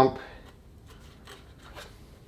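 Faint rubbing and light handling sounds as a rubber timing belt is pulled by hand around the water pump pulley, with a few soft scuffs.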